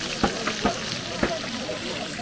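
Small fish deep-frying in a wide black pan of hot oil: steady sizzling, broken by a few sharp clicks.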